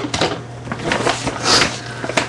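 Rummaging by hand through a bag of small items: rustling and crinkling with a run of small clicks and knocks, and a louder crinkle about one and a half seconds in.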